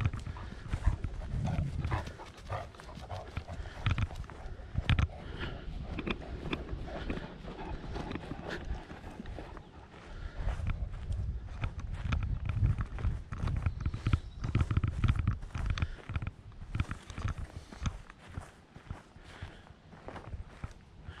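Footsteps of a person walking across grass and dirt: a steady run of footfalls over a fluctuating low rumble.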